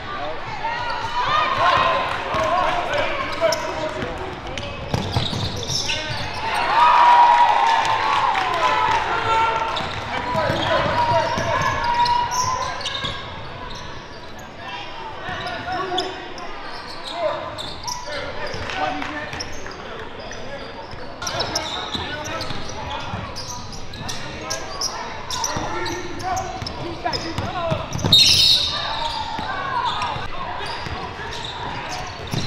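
Live game sound of a basketball being dribbled on a hardwood gym floor, with the chatter and shouts of players and spectators echoing in the hall. Near the end comes a short, sharp, high-pitched sound, likely a referee's whistle stopping play.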